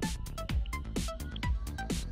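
Electronic dance music with a steady kick-drum beat, about two beats a second, with hi-hat ticks and short synth notes.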